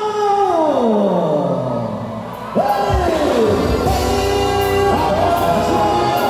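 Music played loud over a sound system for a quadrilha dance: a held note slides steadily down in pitch and fades over about two seconds, then a new section starts abruptly with a heavy bass beat and long held notes.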